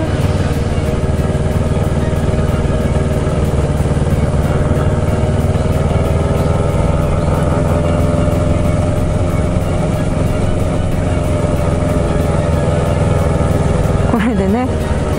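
Kawasaki Ninja 650 parallel-twin engine running steadily at low road speed, heard from the rider's seat.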